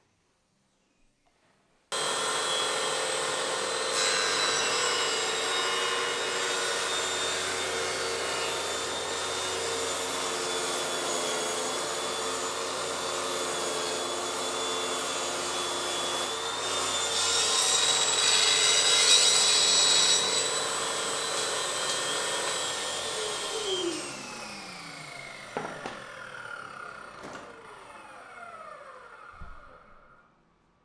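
Homemade table saw switched on together with its shop-vacuum dust extraction about two seconds in, running steadily with a whine, louder and brighter for a few seconds in the middle. Near the end it is switched off and the blade and motors wind down, the pitch falling away.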